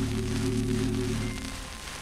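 Wurlitzer theatre organ (the 4/20 at the Empire, Leicester Square) playing a soft held chord from a 1933 78 rpm shellac record, with the record's surface hiss and crackle running underneath. The chord fades away near the end, leaving mostly surface noise.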